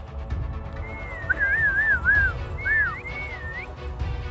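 A person whistling in several short, wavy, warbling phrases that slide up and down in pitch, over a low rumble of wind on the microphone.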